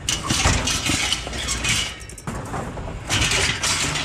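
Metal shelving pieces and a sofa's zigzag spring frame being shifted and pulled through dumpster debris, with irregular metal clattering and scraping that eases briefly about halfway through.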